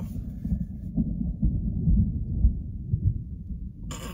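Muffled, low rumbling patter of rain drumming on a car roof, heard from inside the cabin, with small irregular thuds.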